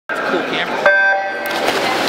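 Electronic starting horn of a swim meet sounding once, a little under a second in: a short steady electronic tone lasting about half a second that signals the start of a backstroke race, over voices in the pool hall.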